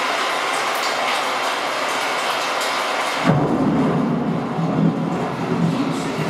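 Nature film soundtrack played through room speakers: a steady rushing noise, joined suddenly about three seconds in by a deeper rumble.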